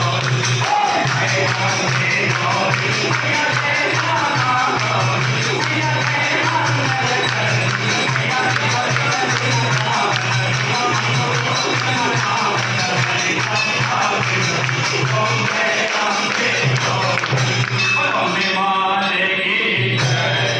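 Hindu devotional music in a temple: a crowd of worshippers singing to the goddess, with jingling hand percussion like a tambourine keeping time. The texture changes near the end.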